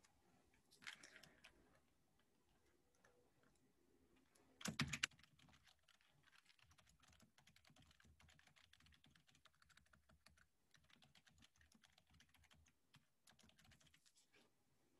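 Faint typing on a computer keyboard: quick runs of key clicks through most of the clip, with a brief louder clatter about five seconds in.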